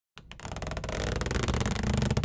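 Animated-intro sound effect: a dense, noisy swell that starts just after a brief silence and builds steadily in loudness.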